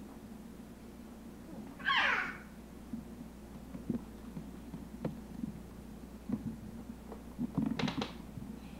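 A toddler's short, high-pitched vocal sound about two seconds in, followed by scattered light clicks and knocks of plastic toy-kitchen pieces being handled, bunched more densely near the end.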